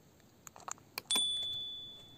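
A few light taps, then a sharp clink about a second in as the crystal knocks against the metal flashlight. It rings with a clear high tone that fades away over about a second and a half.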